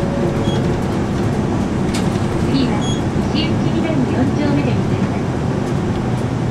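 Steady engine and road noise heard inside a moving city route bus, with a sharp rattle-like click about two seconds in.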